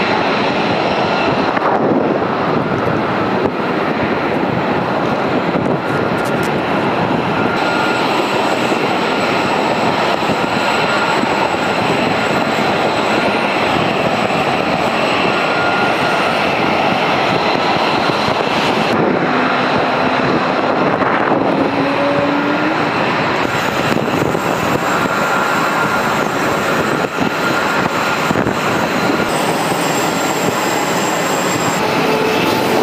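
Military jet engines running on a flight line: a steady, loud rush with faint high turbine whines over it, and a short rising tone about two-thirds of the way through.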